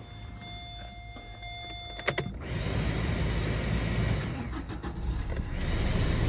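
Vauxhall Corsa van engine being started. A faint steady whine sounds with the ignition on, then a few quick clicks as it cranks at about two seconds, and the engine catches and settles into a steady idle.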